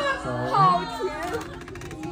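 Several voices talking and calling out over one another, some high-pitched and excited, with a faint steady hum underneath.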